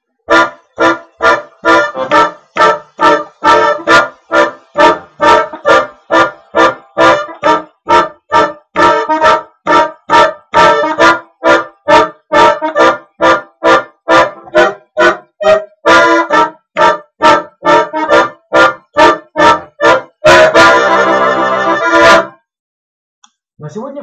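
Bayan (button accordion) playing a blues chord progression in short, evenly spaced staccato chords, about two a second, using tritone-substituted chords in place of plain major ones. About twenty seconds in it ends on one held chord that stops suddenly.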